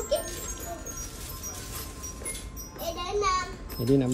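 Indistinct voices, including children talking, over faint steady background music.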